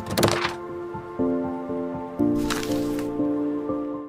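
Short intro sting of electronic music under an animated logo: held chords that shift twice, with a few sharp hits near the start and a burst of hiss in the middle, cutting off abruptly at the end.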